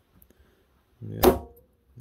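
One sharp snap about a second in, ringing briefly like a plucked string, as the glue-pull dent lifter yanks on a hot-glue pull tab stuck to the car's body panel; the tab is not holding strongly enough to pull the dent.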